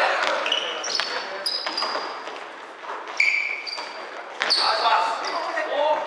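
Basketball bouncing on a wooden gym floor, with short high sneaker squeaks and players' shouts, echoing in a large hall.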